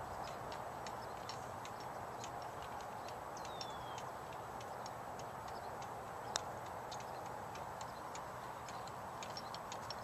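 A single sharp click of a putter striking a golf ball about six seconds in, over quiet outdoor background with faint scattered ticking and a short falling whistle about three seconds in.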